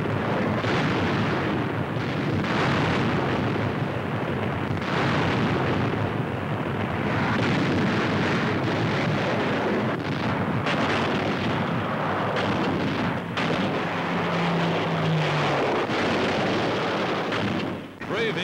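Bomb explosions over the steady noise of aircraft engines, a dense din broken by sharper blasts every few seconds, on an old newsreel soundtrack.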